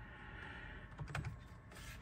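Computer keyboard being typed on, a few faint key clicks about a second in.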